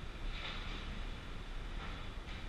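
Ice rink ambience during play: a steady low rumble with a few short hissing scrapes of skates on the ice, one about half a second in and another near the end.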